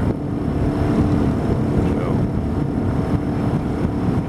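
Jon boat's outboard motor running steadily at an even speed, with a constant low drone and rumble.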